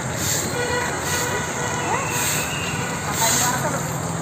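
Bus-stand ambience: indistinct voices over steady traffic and bus noise, with a faint hiss that comes back about once a second.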